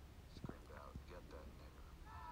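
Faint, quiet speech at a very low level over a steady low hum, with a soft knock about half a second in.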